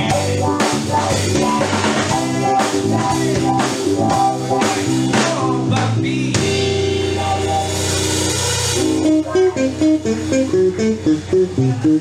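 Live band of guitar, electric bass and drum kit playing an instrumental passage with busy drum strokes. About six seconds in the drumming stops and a held chord with a cymbal wash rings out, followed by short, choppy stabbed notes near the end.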